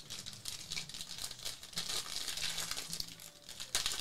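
Foil wrapper of a football trading card pack crinkling as it is handled and torn open by hand, in a dense crackle that gets louder just before the end.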